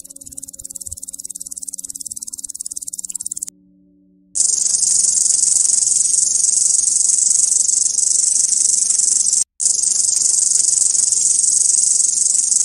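High-pitched insect stridulation in the manner of crickets. A fast pulsing trill stops about three and a half seconds in, and after a short silence a louder, denser, continuous trill begins, broken once for an instant later on.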